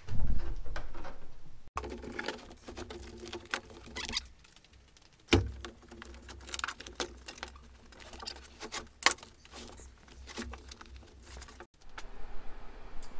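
Carpet and foam underlay being pulled and torn up from the cab floor of a 1977 Chevy C10 pickup: rustling, scraping and ripping with scattered clicks and knocks, and a heavy thump at the start and another about five seconds in. The underlay is tearing loose where it has stuck to the rusting floor pan.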